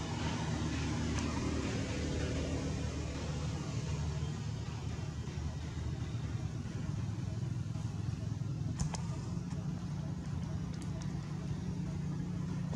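A steady low hum of a running motor, with a couple of short, faint clicks in the second half.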